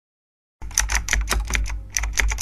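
Typing sound effect: a quick run of keystroke clicks, about six a second, starting about half a second in, over a low hum.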